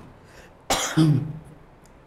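A man's single short cough about two-thirds of a second in, followed by a brief low voiced sound as he clears his throat.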